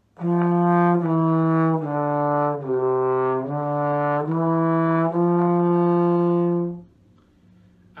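Trombone playing a seven-note legato phrase, F down through E and D to C and back up through D and E to a long held F. Each note is joined smoothly to the next with a soft 'duh' tongue and no gap between them. The phrase ends about seven seconds in.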